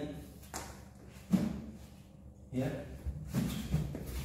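Two sharp knocks, a faint one about half a second in and a loud one just over a second in, with short bits of a man's voice between them and after.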